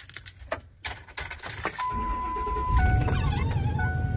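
Car keys jangling and clicking for the first couple of seconds, then a car engine starts and runs with a low rumble. A steady electronic tone sounds over it and drops in pitch about three seconds in.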